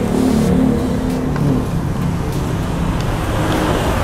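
Road traffic going by: a passing motor vehicle's engine hum, strongest in the first second and a half, over a steady low rumble.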